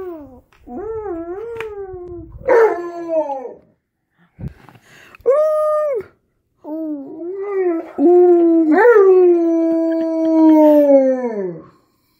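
Alaskan Malamute howling: a string of wavering, gliding howls, the last one long and held before falling away near the end.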